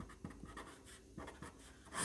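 Faint scratching of a ballpoint pen writing a few short strokes on paper.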